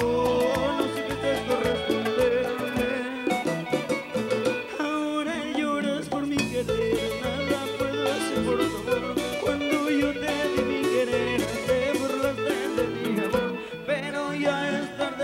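A live Latin tropical band plays a passage of the song with no words sung: a melody line over timbales and steady dance percussion.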